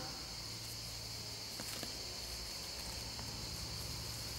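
Quiet room tone: a steady high-pitched hiss with a low hum underneath, broken by a few faint ticks.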